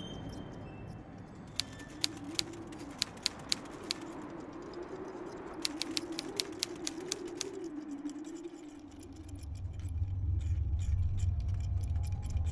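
Typewriter keys striking in quick runs of sharp clicks, two bursts and then a denser patter near the end, over a low wavering drone. A deep low rumble swells in for the last few seconds.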